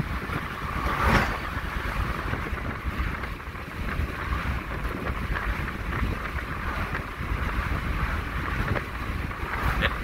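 Steady road and wind noise inside the cab of a moving vehicle at highway speed, with a low rumble throughout. About a second in it swells briefly as an oncoming truck passes.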